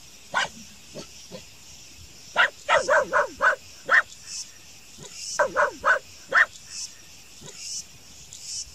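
Small dog barking at a giant anteater: one bark about half a second in, then a quick run of about six sharp barks, and after a short pause another run of four or five.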